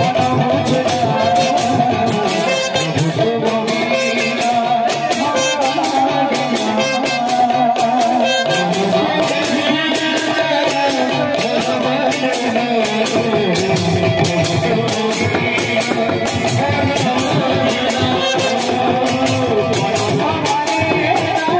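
Odia kirtan music: a barrel drum and small hand cymbals keep up a steady rhythm of sharp strokes under a held melody line.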